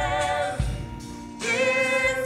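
A large cast singing a musical-theatre number together, with a new held note coming in strongly about three-quarters of the way through.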